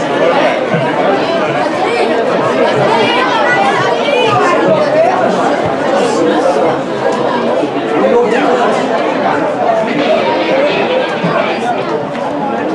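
Crowd of spectators chattering: many voices talking over one another at a steady level, no single voice standing out.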